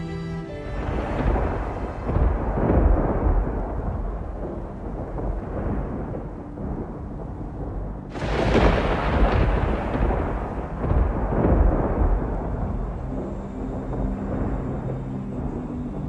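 Two rolls of thunder: the first begins just under a second in and the second, more sudden, about halfway through, each rumbling away over several seconds. Soft music tones return near the end.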